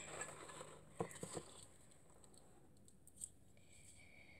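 Faint rustling and handling of packaging as a small glass jar is taken out of a box, with a few light clicks about a second in.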